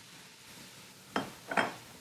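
A glass mixing bowl and spatula set down on a wooden cutting board: two short knocks about a second in and half a second apart, over a faint sizzle of grated vegetables in hot oil.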